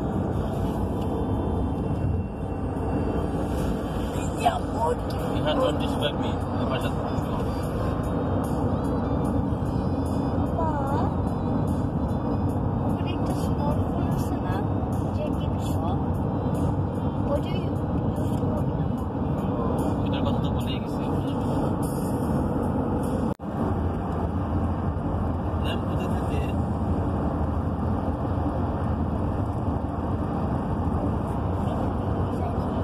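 Steady road and engine noise heard inside a Honda car's cabin while it cruises at motorway speed.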